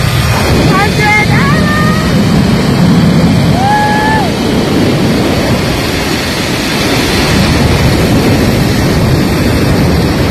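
Loud wind rushing over the phone's microphone during a zipline ride, with a few short high-pitched vocal cries from the rider, a cluster about a second in and another about four seconds in.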